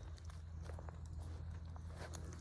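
Faint, soft, irregular footsteps over a low steady rumble.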